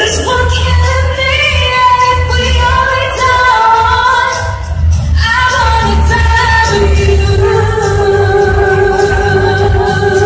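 A woman singing a pop ballad live into a microphone over amplified backing music with deep bass, heard through a hall's PA. In the second half she holds one long, steady note.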